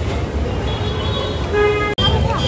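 Street traffic noise in a crowded market, a steady low rumble, with a short vehicle horn honk about one and a half seconds in that cuts off suddenly.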